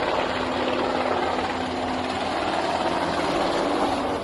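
Military helicopter flying low overhead, its rotor and engine making a steady, unbroken noise.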